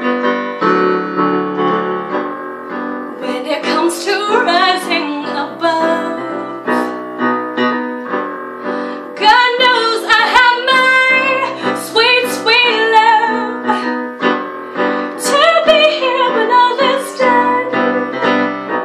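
A woman singing to her own piano-voiced keyboard accompaniment of sustained chords. The keyboard plays alone at first, and the voice comes in about three seconds in, in phrases with short breaks.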